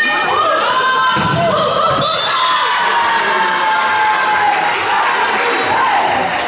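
Indoor volleyball rally: several voices shouting and calling, with a couple of sharp thuds of the ball being struck about one and two seconds in, in a large sports hall.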